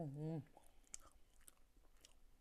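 A short hummed "mmm" at the start, then faint clicking mouth sounds of someone chewing soft, creamy durian mille-crêpe cake.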